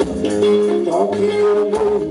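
Live band playing a song: guitars over a drum kit and hand percussion, with steady drum strokes under sustained melodic notes.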